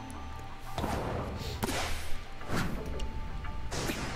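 Volleyball anime match audio: background music with four sharp ball hits about a second apart, the strikes of a rally.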